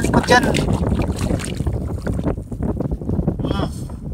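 Wind buffeting the microphone in a steady low rumble over open shallow water.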